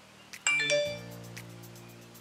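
A bright, bell-like chime rings out suddenly about half a second in and dies away within half a second, over soft background music.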